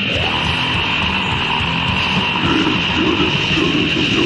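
Lo-fi heavy metal demo recording from 1993, with distorted electric guitar and pounding rhythm. It switches to a new riff right at the outset.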